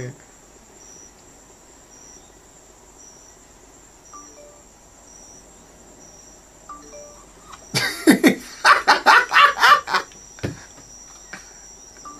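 A quiet stretch with a faint high chirp repeating about every 0.7 seconds and two soft short tones, then a person's voice loudly for about two seconds from near eight seconds in.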